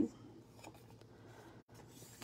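Faint rustling and light ticks of a sheet of designer paper being folded along its score line and handled by hand.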